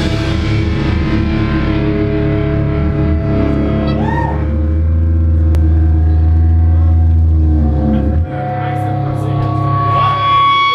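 Distorted electric guitars and bass through amplifiers, sustaining a held, ringing chord. The low bass note stops about eight seconds in, leaving the higher guitar tones ringing on.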